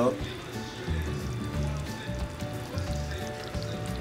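Pork chops in brown gravy simmering in a skillet, the gravy bubbling and sizzling, with background music and a pulsing bass beat underneath.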